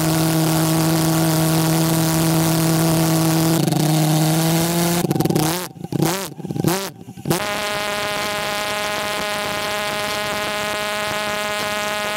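Small home-made gas-fuelled pulse jet engine running with a loud, steady buzzing drone over a hiss. About five seconds in it cuts in and out, its pitch swooping up and down for a couple of seconds, then it settles back into a steady drone at a slightly higher pitch.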